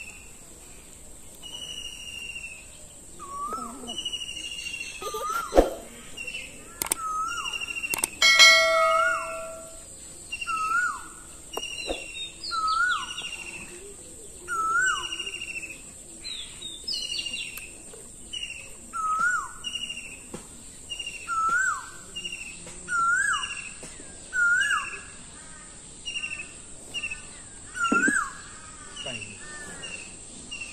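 A songbird calling over and over, about once every one to two seconds. Each call is a high falling whistle followed by short lower notes that hook upward. A steady high whine runs underneath, and a sharp click and a short ringing ding come about six and eight seconds in.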